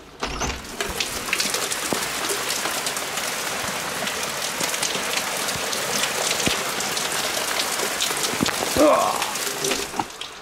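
Rain falling steadily on a garden and window: a dense, even patter of drops. A short wavering pitched sound cuts in briefly near the end.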